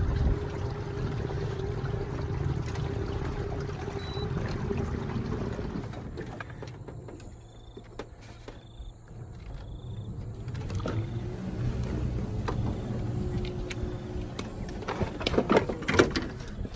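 Small aluminium boat under way on a bow-mounted electric trolling motor: a steady low rumble of motor, water and wind. About halfway through it goes quieter, a hum comes back, and near the end there is a short burst of knocks and rattles as a crayfish trap is hauled in against the hull.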